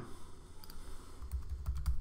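Computer keyboard typing: a couple of separate keystrokes, then a quicker run of key clicks near the end as a short word is typed.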